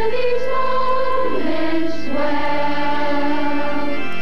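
Children's choir singing a slow song in long held notes, the melody moving to a new note every second or two.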